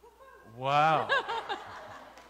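A person laughing briefly: one drawn-out note followed by a few short pulses, about half a second in.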